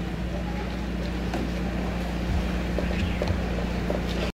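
Steady low hum under a faint even background noise, with a few faint scattered knocks.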